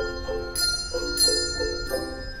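Handbell choir playing: bells struck a few times a second, their notes ringing on over one another, with louder chords of several bells about half a second in and again just past a second.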